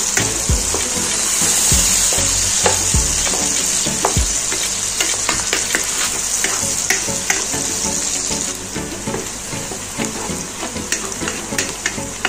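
Sliced onions sizzling steadily in hot oil in a karahi and stirred with a wooden spoon. The sizzle eases a little after about eight seconds, and a quick run of spoon clicks and scrapes against the pan follows near the end.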